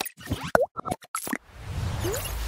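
Cartoon-style sound effects for an animated logo intro: a quick run of short pops and plops, one of them bending in pitch like a boing, then a swelling whoosh with a low rumble starting about a second and a half in.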